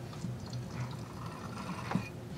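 A worn BMW Z3 M strut damper being worked by hand as its piston rod is pulled out, with the oil inside gurgling and sloshing and a short click near the end. The rod moves with almost no resistance, which the owner takes as proof that the strut is worn out after 97,000 miles.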